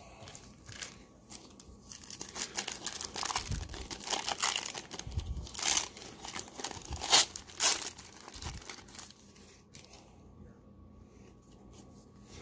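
Wrapper of a 1990-91 Pro Set hockey card pack being torn open and crinkled by hand: a run of rips and crackles, loudest in the middle, dying away about three-quarters through.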